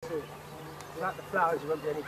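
Outdoor sound cutting in suddenly: people's voices talking over a steady low hum.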